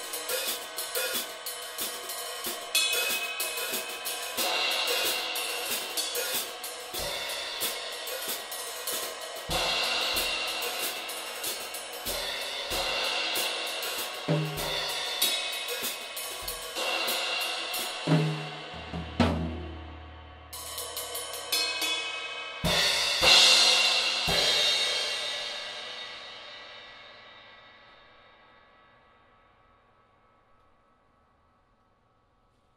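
Drum kit played with sticks: a steady groove of hi-hat and cymbal strokes over snare and bass drum, with a tom fill a little past halfway. It ends on a loud cymbal crash that is left to ring out and fade away to almost nothing.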